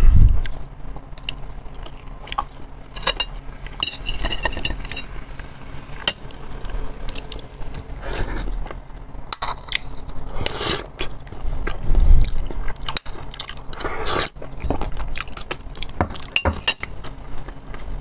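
Close-miked eating: wet chewing and mouth clicks while eating mayonnaise-dressed Olivier salad and baked potato, with a spoon clinking and knocking on the dishes. The clicks and knocks are irregular, and the loudest knock comes about twelve seconds in.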